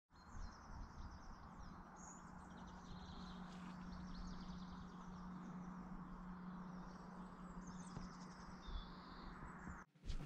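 Faint outdoor ambience with small birds chirping now and then and a steady low hum underneath.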